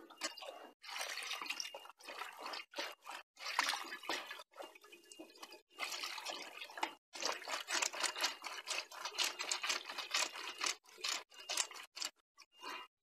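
Water splashing and dripping in irregular bursts broken by short pauses, as hands work in it.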